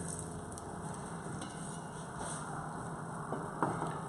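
Faint, steady sizzling from a frying pan on low heat, where salmon is caramelising in a coconut-syrup dressing. A few light knife taps on a wooden chopping board come near the end.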